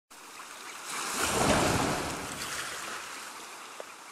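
Ocean surf sound effect: a wave washing in, swelling to its loudest about a second and a half in, then slowly fading.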